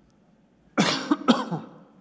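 A man coughing twice, about a second in.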